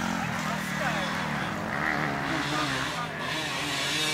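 Enduro dirt bike engine running at low, gently varying revs, with people talking in the background.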